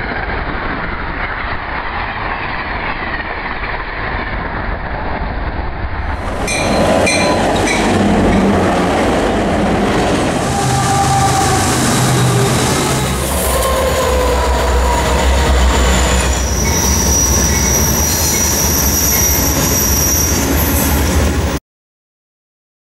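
A passenger train passing, then, after a cut about six and a half seconds in, freight locomotives and cars passing close with a heavy rumble, wheels clicking over the rail joints and high steady wheel squeal in the last few seconds. The sound cuts off suddenly just before the end.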